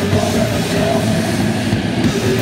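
Hardcore punk band playing live: distorted electric guitar, bass and drums going at full tilt, with the singer shouting into the microphone, loud and dense throughout.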